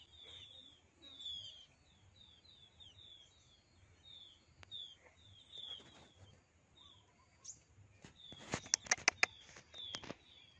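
A flock of small birds chirping in the trees: short, high, falling chirps repeated quickly over and over, faint. Near the end a quick cluster of sharp clicks is louder than the birds.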